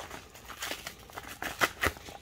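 Plastic bubble mailer being torn open by hand: irregular crinkling and crackling, with a couple of sharper rips near the end.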